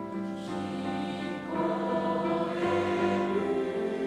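Junior-high school choir singing held chords with piano accompaniment.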